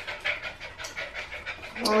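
A puppy panting in quick, even breaths, about four to five a second.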